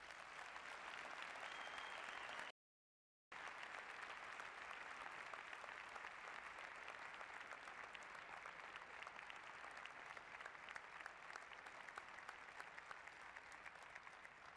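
Audience applauding steadily, a dense even clapping that cuts out completely for under a second about two and a half seconds in, then carries on and eases slightly near the end.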